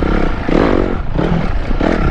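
Dirt bike engine being ridden on a dirt track, its pitch rising and falling several times as the throttle is opened and closed.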